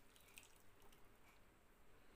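Near silence, with a few faint drips and small liquid pops: tamarind juice being poured into gravy that is simmering in a pan.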